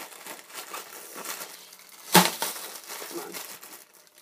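Plastic bubble wrap being squeezed and crinkled, a stream of small crackling pops with one much louder pop a little over two seconds in.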